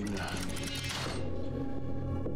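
A geared, ratcheting mechanism whirring for about a second, over a low steady music drone.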